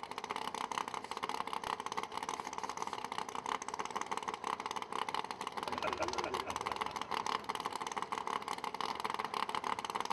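Engine of a nitrous-boosted 2016 Camaro Radial vs. the World drag car idling at the starting line: a steady, rapid crackling run of exhaust pulses, with faint voices mixed in.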